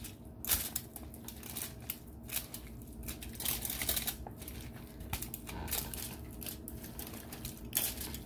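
A bare hand squeezing and kneading raw ground beef with egg, onion and bell pepper in a foil-lined pan. It makes irregular wet squelches and crackles.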